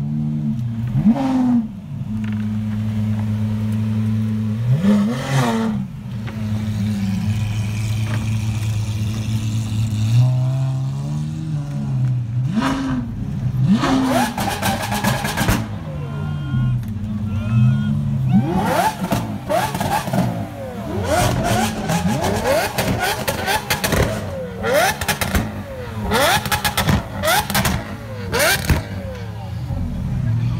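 Engines of custom show cars idling and being blipped, with repeated short revs rising and falling, as the cars roll slowly past. In the second half the revs come faster, mixed with many sharp pops.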